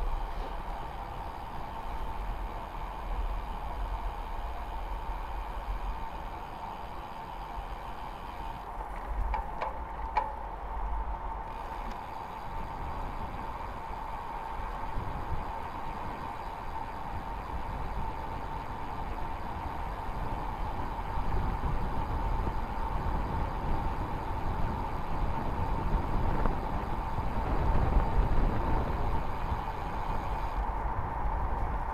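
Wind rushing over the microphone and tyre noise from a road bike coasting downhill, with a steady mid-pitched whine throughout. The rush grows louder in the second half.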